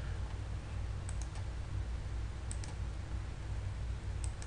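Two pairs of faint computer mouse clicks, about a second in and about two and a half seconds in, over a steady low hum.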